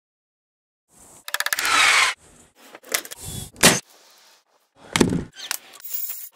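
Silence for about a second, then a rapid run of short, unrelated clicks, knocks and noisy bursts, each cut off abruptly as one clip gives way to the next.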